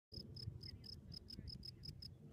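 Field cricket singing: a regular run of short, high, pure chirps, about five a second, over a faint low background rumble.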